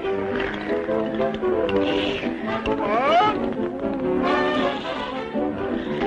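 Orchestral cartoon score from a 1930s animated short, with a quick rising glide about halfway through.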